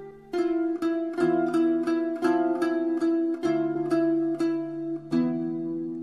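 Background music: a plucked string instrument picking out a melody at about two notes a second over lower held tones.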